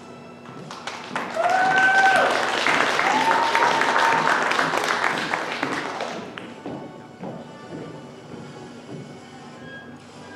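Audience clapping and cheering for about five seconds, with a couple of shouted cheers near the start, over soft background music that carries on after the applause fades.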